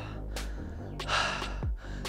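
A man breathing hard, with one heavy, gasping breath about a second in; he is winded from a set of leg raises. Electronic background music with a steady kick drum runs underneath.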